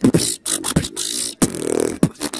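Solo human beatboxing, close-miked: a fast run of sharp percussive kick and snare sounds with hissing hi-hat bursts, and a short pitched tone near the end.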